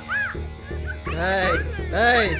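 Long wailing cries that fall in pitch, one about a second in and another at the end, over a low steady music drone, with short high whining tones just before them.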